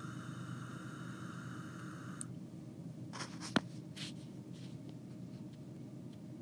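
Faint steady hum with a whirring tone during the first two seconds, then a few light clicks and taps, one sharp click about three and a half seconds in.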